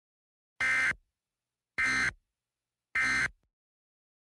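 Emergency Alert System end-of-message data burst sent three times: three short buzzy digital bursts about a second apart, marking the end of the alert.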